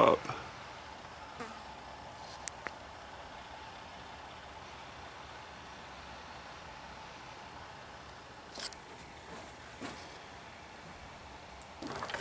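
Quiet steady background hiss, with a few faint clicks and a brief high-pitched sound about eight and a half seconds in.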